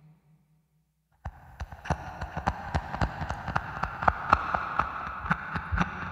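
A low hum fades out, and after a second of near silence a stream of irregular sharp clicks and taps starts suddenly over a steady hiss, about three to five taps a second.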